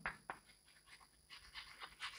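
Near silence broken by a few faint, short taps and scratches of chalk writing on a blackboard.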